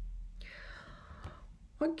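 A woman's breath drawn in for about a second, a pitchless hiss with no voice, over a low steady electrical hum; her speech starts right at the end.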